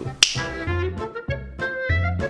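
A single finger snap about a quarter-second in, then upbeat background music with repeated low bass notes under a melody.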